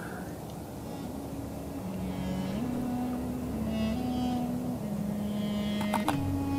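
Background music: a slow melody of long held low notes that step from one pitch to the next.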